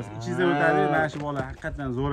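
A dairy cow mooing once, a long low call lasting about a second.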